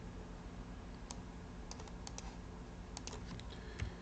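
Faint computer keyboard keystrokes as Arabic text is typed into a PDF: a few scattered clicks, irregularly spaced, over a faint steady hum.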